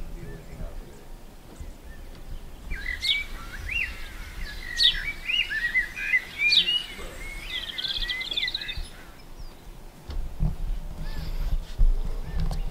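Songbird song: a run of varied chirps and whistles, with several sharp rising notes and a quick trill, starting about three seconds in and stopping about nine seconds in.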